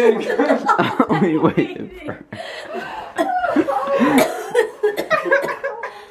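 A few people laughing and chuckling together, with bits of unclear talk mixed in.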